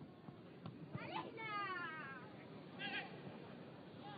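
A person's long, wavering cry falling in pitch about a second in, then a shorter wavering call about three seconds in. These are voices from the pitch or stands, picked up by the match's ambient microphones over faint low thuds.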